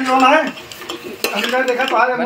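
A metal ladle stirring chicken pieces in an aluminium pot, scraping and knocking against the pot's side, with voices talking over it.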